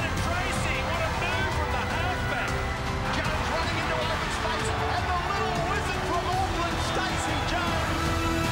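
Background music playing over a match commentator's voice.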